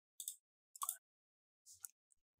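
Computer mouse clicking: three short, faint clicks.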